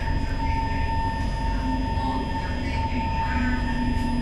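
Inside the cabin of an SMRT C151 metro train pulling into a station: a steady rumble of wheels and running gear with a constant high whine. A lower motor tone comes in during the second half as the train slows.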